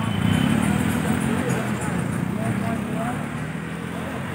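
Crowd chatter: many voices talking at once, with no single clear speaker, over the low running sound of a motor vehicle's engine.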